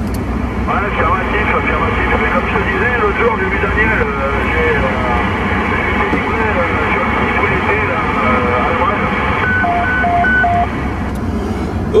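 Another station's voice received over an AM CB radio on channel 19, thin and band-limited with radio noise, ending about 10 s in with a roger beep of three short two-tone beeps that marks the end of the transmission. The steady rumble of the car in motion runs underneath.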